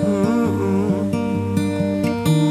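A steel-string acoustic guitar played as live accompaniment, with a wordless vocal melody gliding and wavering over it.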